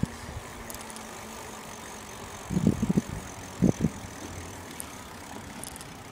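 Dull low thumps of footsteps and phone handling as the camera is carried along, twice in quick clusters, over a steady outdoor hum.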